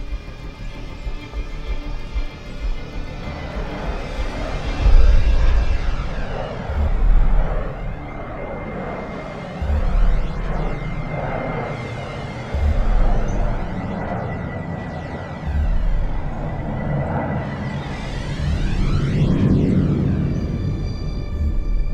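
Tense, eerie film score: a swelling, shimmering texture over a thin held high tone, with deep low hits every two to three seconds, the strongest about five seconds in.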